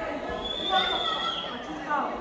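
Audience chatter in a large hall, with high-pitched children's voices calling out.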